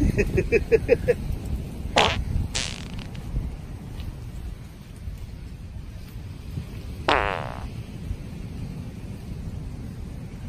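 Farting from a man with an upset stomach: a rapid string of short farts in the first second, single longer ones at about two seconds in, and another about seven seconds in that sinks in pitch, over a low background rumble.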